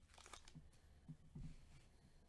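Near silence, with faint crinkling of a foil trading-card pack being torn open by gloved hands, and a few soft handling sounds.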